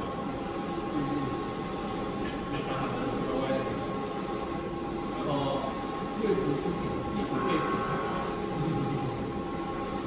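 Wide-format roll-to-roll UV printer running, its printhead carriage shuttling back and forth along the gantry with a steady mechanical whir and a constant high whine.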